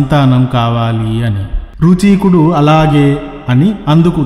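A man's voice intoning in a slow, chant-like delivery, holding long notes at a steady pitch, with a short break about a second and a half in.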